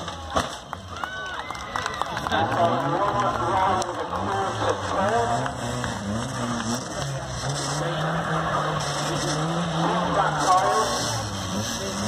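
A banger-racing car comes down off a ramp with a crash in the first half second. Then an engine runs, its pitch rising and falling, under a background of voices.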